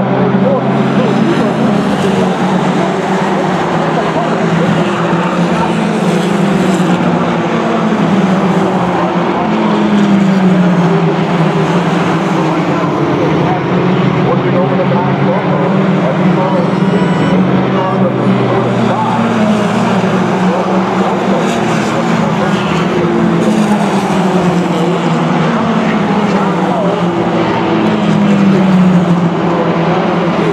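A pack of Fox-body Ford Mustang mini stock race cars running at race speed around a short oval. The engine note keeps rising and falling every few seconds as the cars accelerate off the turns and back off into them.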